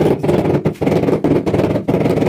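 Rubber mallet tapping a ceramic floor tile to bed it into fresh mortar: a quick series of dull taps, several a second.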